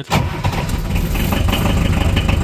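Old Unimog's diesel engine starting after standing two weeks: it comes in suddenly at once and runs on at a steady, evenly pulsing idle.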